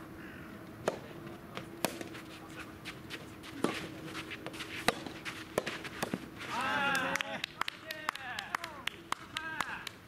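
Soft tennis rally: a series of sharp pops from the rubber ball coming off the rackets and bouncing on the court. About two-thirds of the way through comes one long, loud shout, followed by shorter calls.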